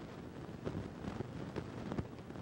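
Milk pouring from a paper carton into a glass measuring cup: a faint steady trickle with a few light clicks.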